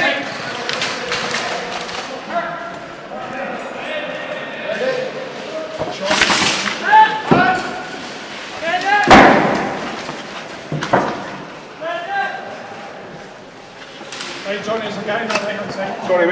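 Indistinct voices of players calling out in a large warehouse hall, with a few sharp knocks or slams, the loudest about nine seconds in.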